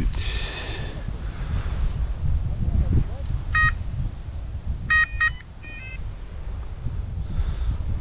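Electronic carp bite alarm giving short beeps, one about three and a half seconds in, two quick ones about five seconds in, then a brief warble, as the line is drawn tight over it after the recast. Wind buffets the microphone throughout.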